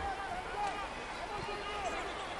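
Football stadium ambience: a low steady background murmur with several faint, short shouts from voices in the stands or on the pitch.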